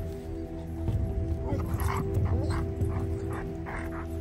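German Shepherd dogs yipping and whining, a run of short sharp calls about every half second from about a second and a half in, over background music with steady sustained tones.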